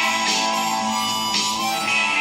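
A 10-hole diatonic harmonica in C (a Spring 10/C) played in an improvised melody, with held notes over guitar accompaniment.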